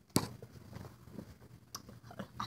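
Quiet handling noises: a sharp click just after the start, faint scattered ticks, and another click near the end, as objects are moved about close to the microphone.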